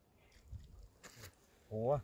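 Mostly quiet with a few faint clicks, then a brief sound from a man's voice near the end.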